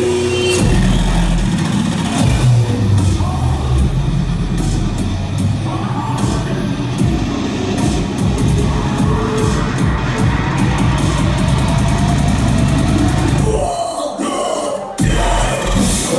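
Loud dubstep DJ set over a club sound system, heard through a phone's microphone in the crowd: heavy bass throughout, which cuts out for about a second near the end and then comes back in.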